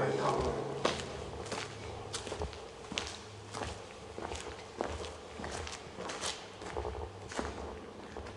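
Footsteps of people walking in sneakers on the hard floor of a tunnel: an uneven run of light steps, about one to two a second.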